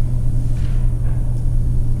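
A steady low hum with a deeper rumble beneath it, unchanging throughout.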